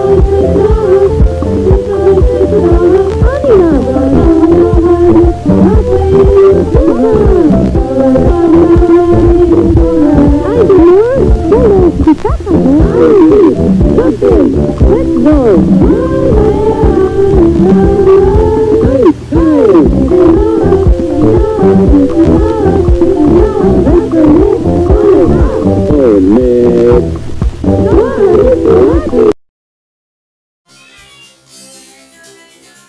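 Children's cartoon theme song sung in French, voices over a steady beat, cutting off suddenly near the end.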